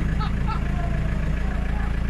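Off-road 4x4's engine running at low speed, a steady low rumble as it crawls through deep mud ruts.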